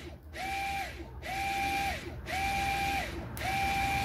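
Renault Grand Scenic Mk3 electric parking brake caliper motor, powered straight from a 12 V battery with reversed polarity, whining as it winds the parking brake mechanism back off. It comes in repeated runs about once a second, each rising in pitch, holding steady, then falling away.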